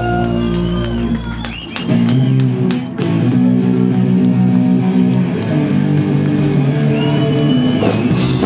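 Live rock band playing loud, with electric guitar chords ringing out. The sound dips briefly about a second and a half in, then the full band comes back in and plays on steadily.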